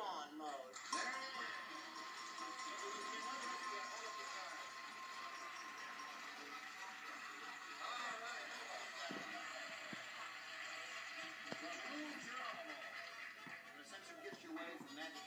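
Game-show music cue playing with studio audience noise as the contestant wins her game, heard through a television speaker.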